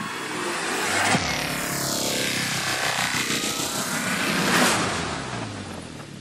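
Logo-reveal intro sound effects: a whooshing electronic sweep with a sharp hit about a second in. The whoosh dips in pitch and rises again, swells to a peak near the end, then fades.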